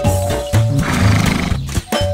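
A horse whinnying once, with a wavering, falling pitch, over background music with a steady bass beat.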